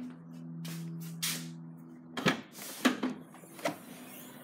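A Nissan Qashqai's tailgate being unlatched and swung open: three short clicks and clunks in the second half, over a faint held musical chord that stops just before them.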